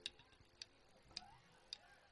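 Near silence broken by four faint, evenly spaced ticks about half a second apart, a count-in just before the band comes back in.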